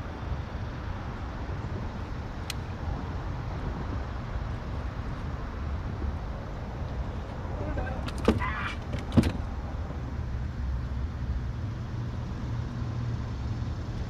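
A steady low rumble throughout, with two sharp knocks about eight and nine seconds in as a fish is unhooked on a boat deck, and a brief voice-like sound just before them.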